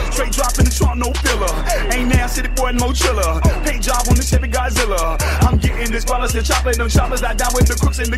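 Hip hop music: a rapped vocal over deep, sustained bass notes and sharp drum hits.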